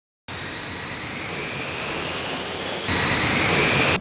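Parrot AR.Drone quadcopter's electric motors and propellers running: a steady whirring hum with a high whine that slowly rises in pitch. It starts abruptly just after the start, gets louder about three seconds in, and cuts off abruptly.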